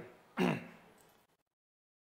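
A man briefly clearing his throat, once, as his speech trails off; about a second later the sound cuts out completely.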